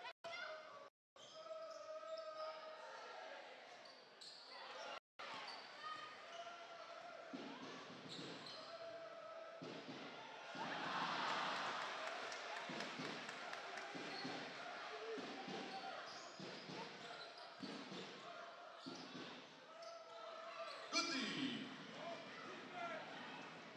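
Basketball being dribbled on a hardwood court, irregular thuds of the ball, amid voices and crowd noise in a large arena, with a swell of crowd noise about ten seconds in. The sound cuts out briefly twice in the first five seconds.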